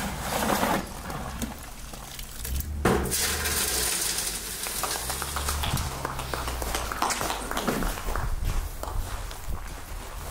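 A metal shovel scooping wet concrete from a trough and tipping it down a metal chute. Irregular scrapes and knocks are heard, with a longer slushy wash about three seconds in as the concrete slides down.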